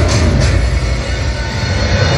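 Loud dance-show soundtrack played through a hall's sound system, here a dense rumbling, noisy passage with heavy bass and two sharp hits in the first half second.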